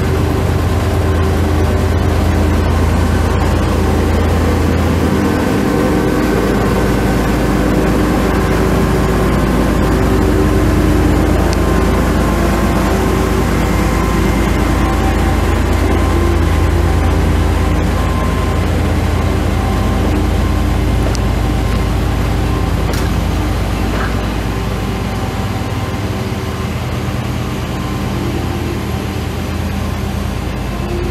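Diesel engine of an orange FS diesel shunting locomotive running, a loud steady drone with a low rumble, easing off a little near the end.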